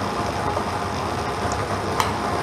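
Lottery ball draw machine running: a steady rushing noise with faint clicks of the balls tumbling inside the chambers.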